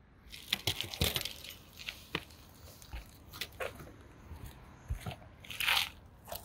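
Irregular small clicks and scrapes of hands working a caulking gun and shifting around the shingles of a roof vent, with a longer scrape near the end.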